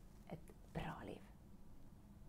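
A woman's voice, faint and breathy, in a short sound about a second in, then near silence with faint room tone.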